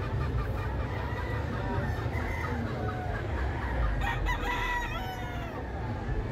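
A gamecock crowing once, about four seconds in, over a steady low hum of background noise.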